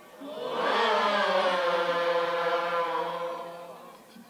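A man's voice singing a qaswida into a microphone, one long held note that swells up early on and fades away near the end.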